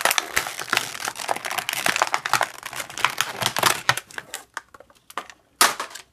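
Stiff clear plastic blister packaging being cracked and pried open by hand: a dense run of crackling and snapping plastic for about four seconds, then a few scattered clicks and one sharp crack near the end.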